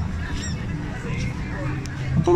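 Busy night-time shopping street: a steady low hum of crowd and street noise, with faint high chirps now and then.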